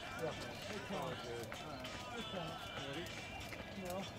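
Distant, indistinct voices of people talking, too far off to make out words, with a few faint knocks.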